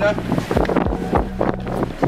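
Wind buffeting a handheld camera's microphone over the chatter of a crowd, with a steady low hum underneath.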